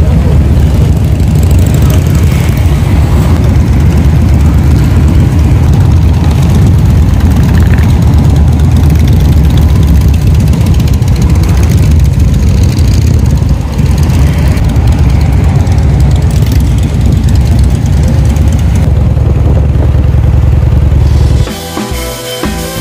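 Loud motorcycle engine running at a steady speed, a deep low rumble close to the microphone, cutting off suddenly near the end.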